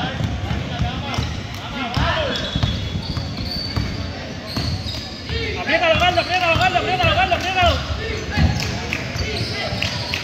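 Basketball bouncing on a gym court during play, a string of low thumps, mixed with players and spectators shouting; the shouting is loudest just past the middle.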